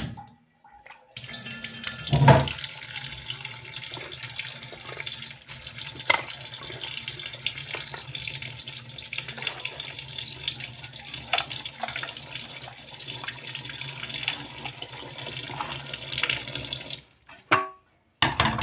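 Tap water running into a steel bowl of chopped leafy greens in a stainless steel sink. The flow starts about a second in and stops near the end. There is a knock about two seconds in and a sharp clink just before the end.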